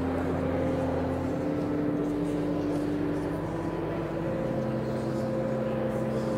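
Organ playing slow, sustained chords, each held for a second or more before moving to the next.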